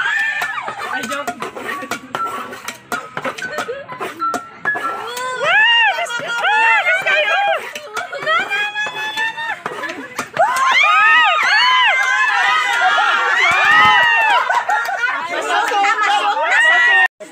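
A group of people shouting and calling out excitedly, many high-pitched voices overlapping, growing louder and denser from about ten seconds in.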